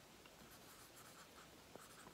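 A marker writing on a clear plastic cup, very faint.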